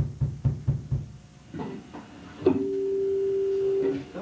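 A quick run of about six low thumps in the first second. Then a single guitar note is plucked about two and a half seconds in and held steady for more than a second.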